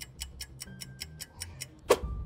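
Clock-ticking sound effect: fast, even ticks about eight a second, ending in one loud sharp hit near the end.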